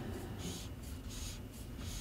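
Cotton gloves rubbing and sliding on a camera lens barrel as it is turned in the hands: a series of soft, scratchy rubs, about two a second.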